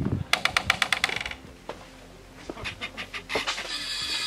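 A metal-clad greenhouse door creaking on its hinges as it is pushed open. There is a fast run of creaks lasting about a second near the start, then a shorter run about two and a half seconds in.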